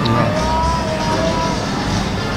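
Background music over a steady, noisy hum of room sound.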